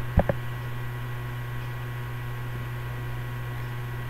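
Steady low electrical hum with light hiss, with two short clicks in the first half second.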